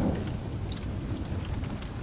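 Thunderstorm ambience: steady rain with a low rumble of thunder underneath.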